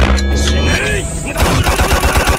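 Cartoon soundtrack of music and sound effects. A low steady tone gives way, about one and a half seconds in, to a fast run of hits, about ten a second, like a rapid-fire flurry of blows.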